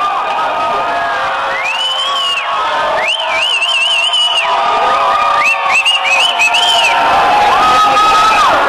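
Street crowd of marchers cheering and yelling, with several high, wavering whoops rising above the noise.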